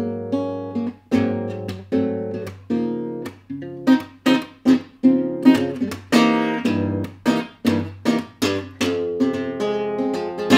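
Acoustic guitar strumming jazz chords in a rhythmic comping pattern, about two to three chord strokes a second, each ringing and fading, with low notes sustaining underneath.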